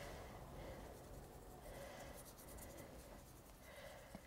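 Faint rubbing of a paintbrush working brown gel colour into a fondant surface, barely above room tone.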